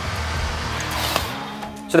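Background music with a swelling rush of noise, like a whoosh transition effect, that builds for about a second and then fades out near the end.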